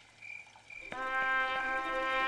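A brass fanfare on a soundtrack starts suddenly about a second in: a loud held trumpet chord. Before it, a faint high chirp repeats a few times a second.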